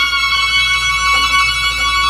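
Violin holding one long, high sustained note.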